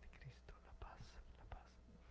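Near silence with faint whispered voices, as people quietly exchange greetings of peace.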